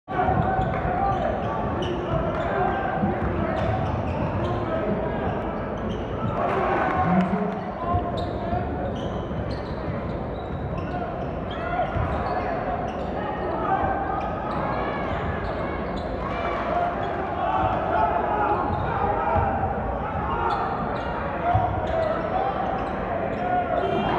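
Basketball being dribbled on a hardwood gym floor, with spectators talking throughout in a large, echoing gym.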